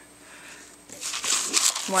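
A thin printed paper sheet rustling and crinkling as it is picked up and bent by hand, starting about a second in.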